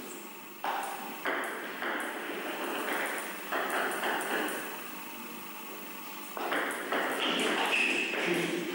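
Table tennis ball knocking on the table and the bats: a few spaced knocks in the first few seconds, then a quicker run of hits from about six seconds in as a rally gets going, each knock echoing in a large hall.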